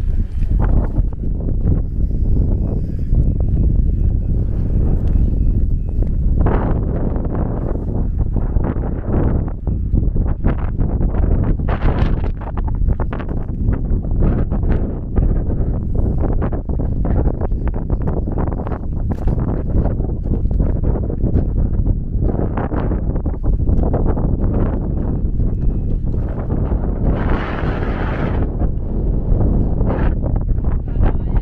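Wind buffeting the microphone: a loud, gusty low rumble with many short crackling gusts.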